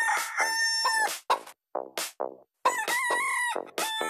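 Chicken clucks and rooster crowing, sampled and chopped into a rhythmic techno track: quick runs of short clucks around two longer held crowing calls, one at the start and one from about three seconds in.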